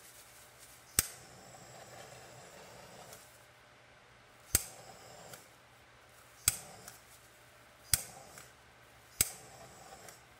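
Handheld butane torch clicking its igniter five times, a second or two apart, each sharp click followed by a brief hiss of gas and flame as it is passed over wet acrylic paint.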